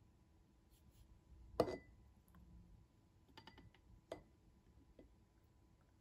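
A quiet room with a few light clicks as a plastic TDS meter is handled and dipped into a glass of tap water. The sharpest tap comes about a second and a half in, with a few fainter clicks a couple of seconds later.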